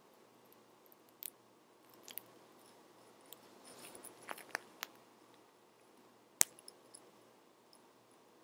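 Hands working yarn at the edge of a stuffed crochet cushion: faint scattered sharp clicks and ticks, with a soft rustle of yarn and fabric about four seconds in and the sharpest click a little after six seconds.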